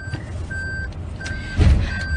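Electronic beeping: a short, steady high tone repeating about every 0.7 s over a constant low rumble, with a low thud near the end.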